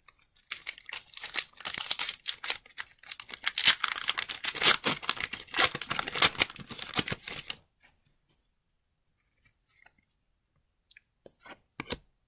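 A foil hockey card pack wrapper being torn open and crinkled by hand: a long run of quick crackling rips and rustles that stops about seven and a half seconds in. A few faint clicks follow near the end.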